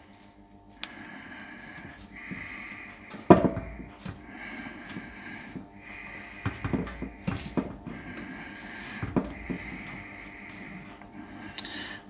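Food being pressed and arranged by hand in a stainless steel oven tray, with a few light knocks against the metal; the sharpest knock comes about three seconds in. Breathing close to the microphone comes and goes about every two seconds.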